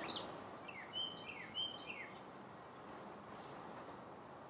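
Faint bird chirps outdoors: a handful of short calls, some falling in pitch, in the first half, and a fainter high chirp later, over a quiet steady background hiss.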